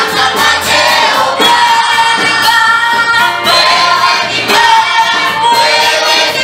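A group of women singing a church song together, one voice through a microphone, over a steady beat.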